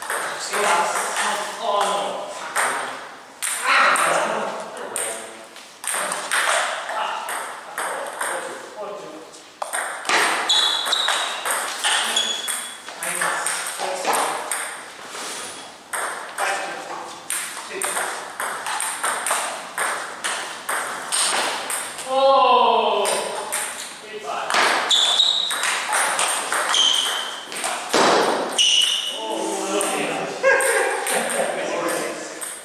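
Table tennis rallies: the celluloid ball clicking off bats and the table, ringing in a large hall. A few short high squeaks sound in the second half.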